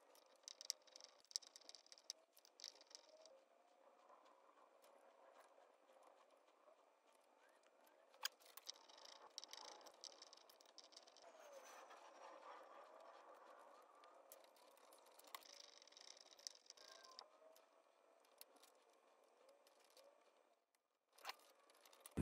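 Near silence, with faint scattered clicks and rustles of hands handling and rerouting insulated electrical wires.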